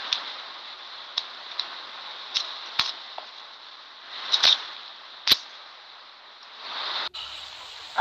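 Steady hiss of a phone voice-note recording with sharp clicks scattered through it, and a brief cut-out about a second before the end.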